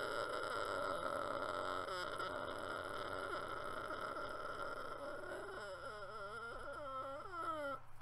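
A man's long, high-pitched drawn-out vocal whine of indecision. It is held steady, then wavers up and down in pitch over the last few seconds before breaking off.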